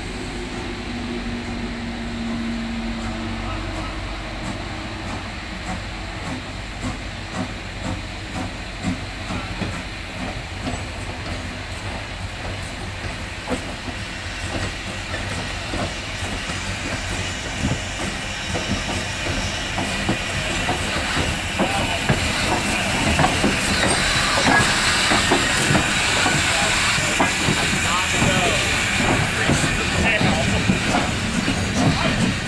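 Strasburg Rail Road No. 90, a 2-10-0 Decapod steam locomotive, approaching and running past close by: steam hissing and running gear clanking. It grows steadily louder, loudest in the last few seconds as it draws alongside.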